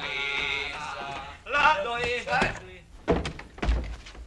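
A group of men singing a long, wavering note together, then a short burst of voices, followed by several sharp knocks in the last second.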